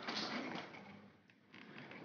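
Faint handling sounds with a couple of soft clicks as a Subaru EJ engine's AVCS oil control solenoid is worked out of the cylinder head by hand.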